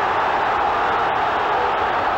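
Steady noise of a large football stadium crowd, heard through an old television broadcast soundtrack.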